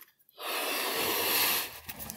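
A person blowing one long breath into a balloon by mouth to inflate it about halfway. It is a steady airy rush that starts about half a second in and lasts over a second.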